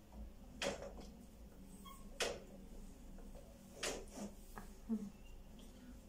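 Laundry being handled and hung on a metal clothes drying rack: three short, sharp sounds about a second and a half apart, with a couple of fainter ones and soft rustling between.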